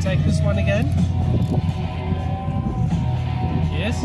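Background music with guitar, with a voice over it.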